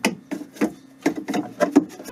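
A quick, irregular run of scraping and knocking strokes, about ten in two seconds: a hard plastic pipe socket tool rubbing and bumping against PVC plumbing and a bulkhead nut as it is worked on by hand.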